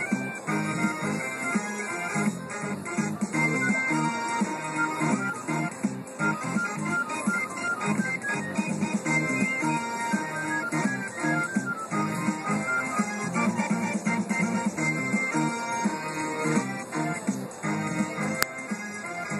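Aristocrat Mr. Cashman African Dusk slot machine playing its free-games bonus music, a steady run of short, bright melodic notes, while line wins are counted up on the win meter.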